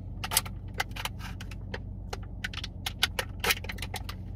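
Irregular light clicks and taps from handling small plastic makeup items, a lip gloss tube and its applicator wand, over the steady low hum of the car.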